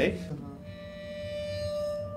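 Waterphone ringing one long, steady metallic tone with fainter higher overtones, its pitch sagging slightly near the end.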